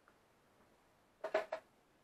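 A woman's short laugh of three or four quick breathy pulses, about a second and a quarter in, over otherwise quiet room tone.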